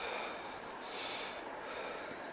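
A man breathing in and out close to the microphone: repeated breaths, each heard as a short hiss lasting about half a second to a second.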